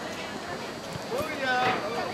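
High-pitched shouted calls from people at a soccer game, one rising call coming in about a second in and carrying past the end, over a faint steady background of the open field.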